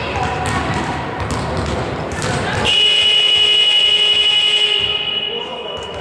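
Basketball scoreboard buzzer sounding one long, steady electronic tone that starts abruptly about three seconds in and fades after about two seconds, marking the end of a timeout. Before it, voices and a bouncing basketball echo in the gym.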